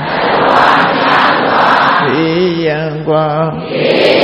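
Buddhist congregation chanting line by line in call-and-response. Many voices recite a line together, then a single male voice leads the next line about halfway through, and the group comes back in near the end.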